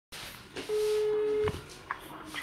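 Telephone ringing tone heard down the line while a call is placed: one steady beep lasting just under a second, ending sharply with a click, then a short click just before the call is answered.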